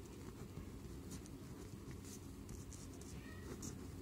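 Pen scratching on paper in a series of short, faint strokes as words are written by hand.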